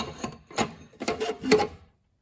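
Steel tapered ring compressor sleeves knocking and clinking against each other in a toolbox drawer as they are sorted through: about four knocks, some with a short metallic ring, then the sound cuts off.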